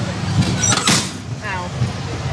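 Steady mechanical rumble from the Zipper carnival ride, with a sharp clack about a second in and a short falling voice-like sound just after.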